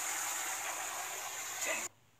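Tap water running hard into a sink, a steady rush that cuts off suddenly near the end.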